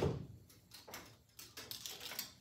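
Clothes hangers knocking and scraping against each other and the rack rail, a series of short clicks and clacks, as a tangled hanger is worked free.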